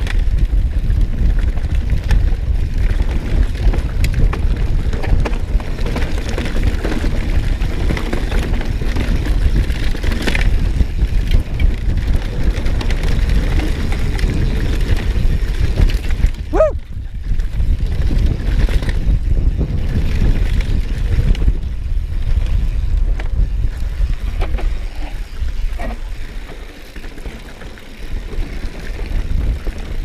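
Mountain bike descending rough grassy ground, recorded from the handlebar: wind buffets the microphone over steady tyre rumble and the rattle and clatter of the bike over rocks. A brief high squeal comes about halfway through.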